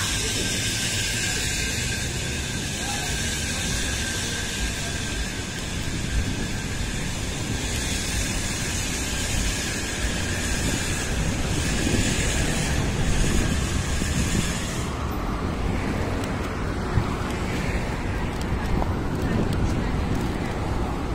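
City street ambience: steady traffic noise with rumbling wind on the microphone, and a high hiss that drops away about fifteen seconds in.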